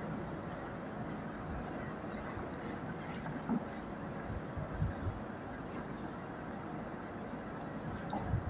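Steady low background noise with a faint hum, broken by a couple of soft faint bumps around the middle.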